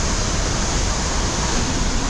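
Steady rush of a large waterfall pouring through a rocky gorge, a constant, even roar of falling water.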